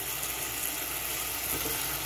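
Shrimp in pepper sauce sizzling in a saucepan as a spatula stirs it, a steady hiss.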